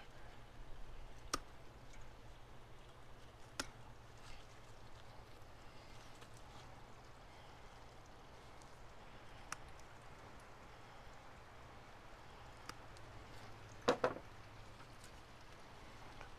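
Cutters snipping wooden skewers: a few faint, sparse clicks and one louder snap near the end, over a low steady hum.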